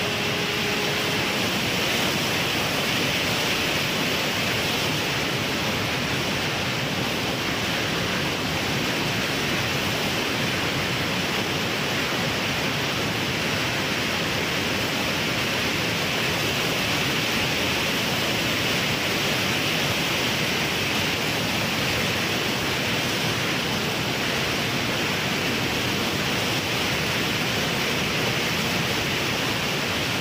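Steady rushing wind noise from airflow over the onboard camera of an FPV flying-wing plane in flight, an even hiss at constant level throughout.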